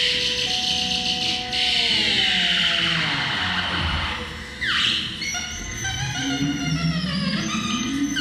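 Synthesizer improvisation: held electronic tones that slide down in pitch, a quick rising sweep about halfway through, then several falling tones together and a low tone climbing near the end.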